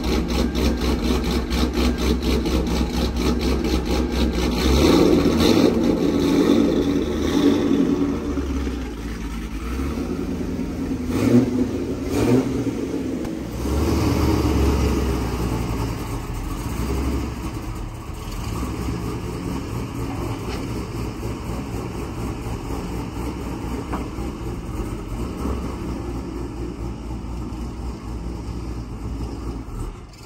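Cammed V8 of a GMC Sierra with a BTR stage 4 camshaft, running through a Corsa Extreme equal-length exhaust with no resonators: a loud, choppy idle with a few short revs in the first half, then a steadier run as the truck moves off at low speed.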